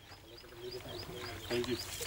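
Men's voices talking in the background, with a faint high chirp repeating about four times a second.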